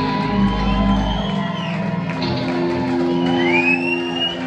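Live rock band ending a song: the bass and drums stop about a third of the way in and the guitars' last chord rings on. The crowd shouts and whoops over it, with a rising whistle near the end.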